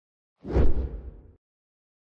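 A whoosh sound effect from an animated logo intro, with a deep low end. It starts suddenly about half a second in and dies away within a second.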